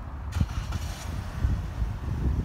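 Outdoor traffic noise with wind rumbling on the phone's microphone; a brief hiss like a passing vehicle comes about a third of a second in and lasts about half a second.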